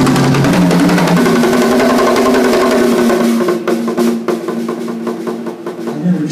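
Live rock band with a drum kit played hard: dense drum strikes and cymbals over sustained bass and guitar notes. About three seconds in the bass drops out and the drums carry on with scattered hits as the song winds down to its end.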